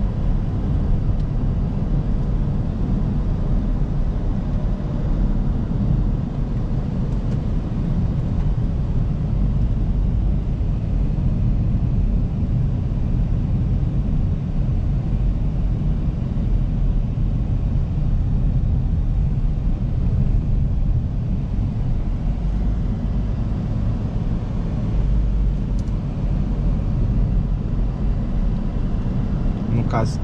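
Steady low road and tyre rumble inside the cabin of a Toyota Prius hybrid car driving at speed on a road.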